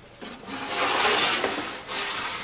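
Top cover of a Keithley 228A instrument scraping along its chassis as it is slid back off, a steady rub lasting about a second and a half.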